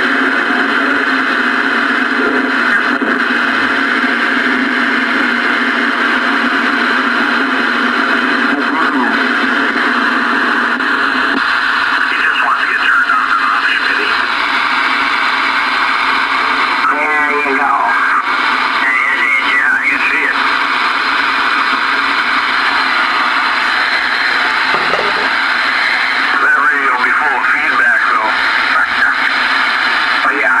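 Ranger RCI-2985DX ten-meter radio's speaker playing a steady hiss of band noise, with garbled, mistuned voices coming through in stretches and warbling up and down in pitch as the frequency and clarifier knobs are turned.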